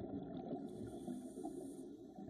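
Faint low-pitched background noise, steady and without speech.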